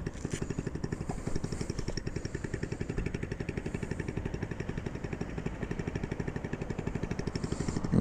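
Honda Ruckus scooter with a swapped-in GY6 150cc engine idling through a straight-pipe exhaust: a steady, even, rapid putter.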